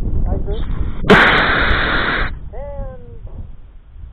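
A model rocket motor lighting at launch: a sudden loud rush about a second in that lasts just over a second, then cuts off. A voice exclaims briefly with a falling pitch right after.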